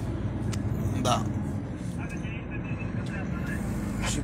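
Truck engine running, heard from inside the cab as a steady low drone.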